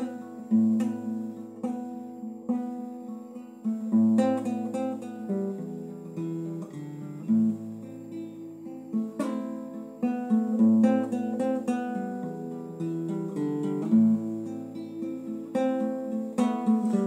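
Classical guitar played solo: plucked chords in a slow folk pattern, with a low bass note returning about every three and a half seconds.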